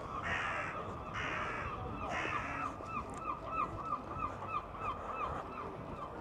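Seagull giving its long call: three long harsh cries, then a fast run of short yelping notes, about five a second, dying away near the end.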